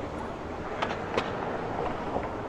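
Steady background noise of street traffic, with two short clicks about a second in.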